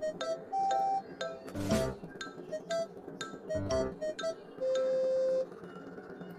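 Light, playful background music: a run of short, evenly spaced bell-like notes over a soft low beat about every two seconds, with a couple of longer held notes.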